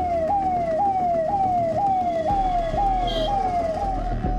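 Ambulance siren in a fast repeating cycle, each cycle jumping up and gliding down in pitch about twice a second, over a low rumble. Near the end the siren settles to one steady tone.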